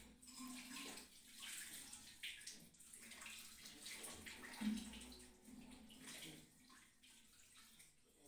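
Faint scratching of a graphite pencil drawing on paper, in irregular strokes with short pauses between them.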